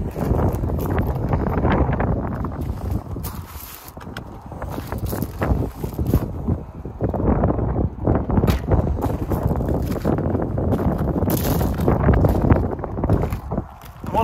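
Wind buffeting the microphone in gusts: a loud, rumbling noise that dips briefly about four seconds in.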